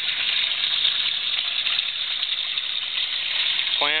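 Water gushing and splashing steadily into a garden pond.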